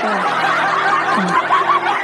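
A burst of snickering and chuckling from several voices, dense and busy, that cuts off abruptly at the end.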